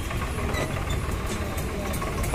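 A tractor's diesel engine idling steadily, a low even rumble.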